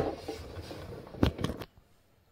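Handling noise: faint rustling, then a quick cluster of sharp knocks and clicks a little over a second in, as things on the counter are picked up and moved.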